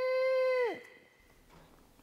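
A single long scream held at one steady high pitch, ending with a drop under a second in: the staged cry of a child being grabbed by a stranger in a role-play.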